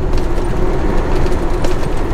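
Steady in-cab drone of a diesel semi-truck cruising on the highway: engine hum and tyre noise on a wet road, with a faint steady low tone over it.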